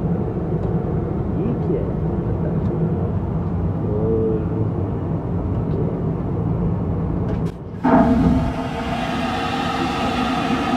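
Steady low drone of an airliner cabin. Near the end it dips, then an aircraft vacuum toilet flushes: a sudden loud rush with a steady hum running through it.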